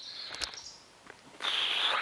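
A person's loud breath drawn near the end, heard as a short hiss. Before it there is only faint outdoor background and a small click.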